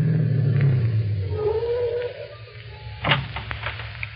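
Radio-drama sound effect of a car's engine running down as the car pulls to a stop, with a brief wavering whine as it slows. About three seconds in comes a sharp crackle followed by rustling, as of a paper map being unfolded.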